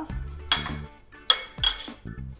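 A metal spoon clinking against a ceramic plate three times, sharp and ringing, the second clink the loudest, over background music with a light beat.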